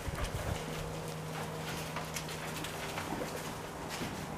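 A young lion's paws thudding and stepping on wooden pallets, with a few heavier thumps about a quarter to half a second in as it climbs up, then scattered light knocks. A steady low hum runs underneath.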